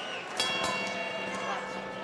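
Boxing ring bell struck once about half a second in, its metallic tones ringing on and fading over about a second and a half, marking the start of the next round.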